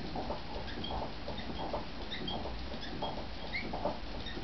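Surface noise of a 1911 shellac 78 rpm record turning on a phonograph: a steady hiss with irregular crackles and small pops, with no music heard.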